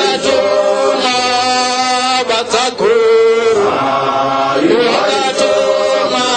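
Voices chanting a hymn in long held notes, with short breaks between phrases.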